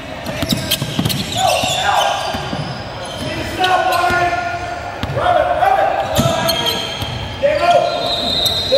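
A basketball dribbled on a hardwood gym floor, each bounce echoing in the large hall, with short squeaks from sneakers on the court and voices around it.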